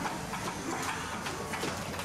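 Busy shopping-street ambience: a steady hubbub of noise dotted with many small clicks and knocks.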